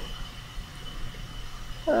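Quiet room tone in a pause between speech: a low steady hum and a faint steady high whine, with a spoken "um" starting right at the end.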